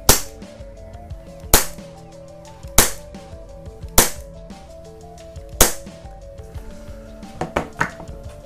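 WE G19 gas blowback airsoft pistol firing five single shots on green gas, unevenly spaced about a second or so apart, each a sharp crack.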